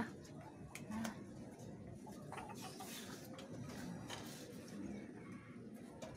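Faint outdoor background with a few soft clicks and a brief rustling hiss around the middle. A woman says a short 'à' about a second in.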